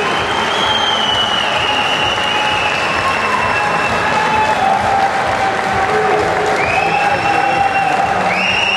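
Audience applauding steadily, with long held tones sounding over the clapping.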